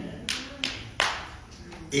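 Three sharp hand claps about a third of a second apart, the last one loudest, with a short echo of the room after it.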